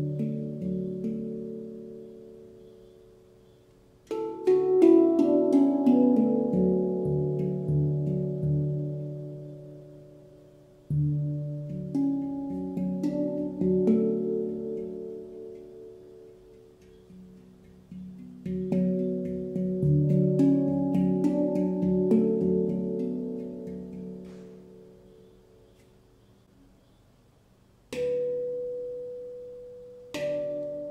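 Stainless-steel handpan tuned D / F# A B C# D E F# A, an F# Aeolian hexatonic scale (Raga Desya Todi), played with the fingers. Runs of quickly struck, ringing notes come about four, eleven and eighteen seconds in, each left to die away slowly, and a single struck note near the end.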